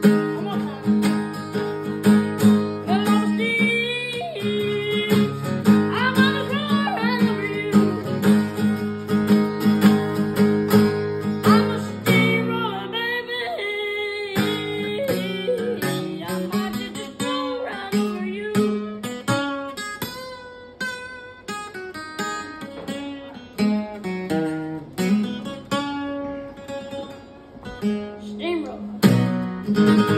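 Acoustic guitar played live, strummed chords under a young singer's voice for about the first twelve seconds, then a picked single-note lead break with the singing stopped, and full strumming coming back near the end.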